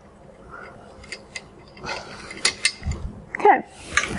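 A screwdriver working a hose clamp on the extractor's tubing, heard as small metallic clicks and scraping. Near the end there is a low knock as the tube is handled.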